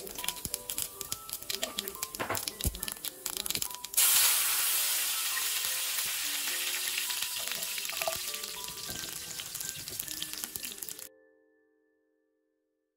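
Mustard and cumin seeds crackling and popping in hot sesame oil in a frying pan. About four seconds in, a sudden loud sizzle as curry leaves and garlic go into the oil; it slowly fades, then cuts off suddenly near the end.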